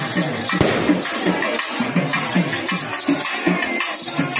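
Tamil kummi folk song with singing and jingling percussion, accompanying a kummi dance, with a few sharp strikes in the mix.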